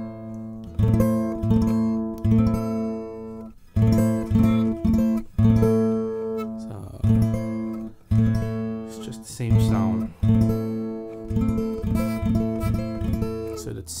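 Acoustic guitar strumming an A minor chord starting from the fifth string, struck again roughly once a second and left to ring and fade between strums.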